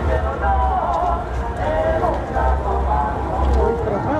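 Overlapping voices with some music, over a low rumble that swells and fades.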